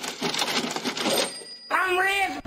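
A cash-register or falling-coins sound effect: a dense, bright jingle of many small clicks that dies away a little past a second in.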